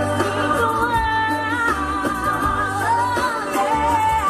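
Pop music with a woman singing live: long held notes that waver in pitch, over an accompaniment with a steady bass.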